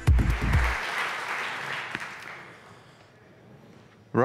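Audience applauding, fading out over about three seconds, while the last bass notes of electronic intro music end within the first second.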